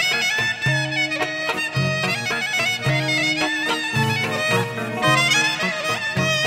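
Greek folk clarinet playing an ornamented dance melody, with bending and trilled notes, over a steady bass and rhythm accompaniment.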